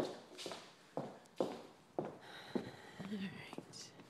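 Footsteps walking across a hard laminate floor and out onto pavement, about two steps a second. A thin high squeak lasts for a second or so about halfway through.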